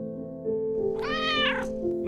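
A domestic cat meows once, about a second in: a single drawn-out meow lasting about half a second, over background piano music.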